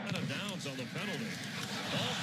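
Faint speech from a football broadcast's commentary, over a steady background hiss.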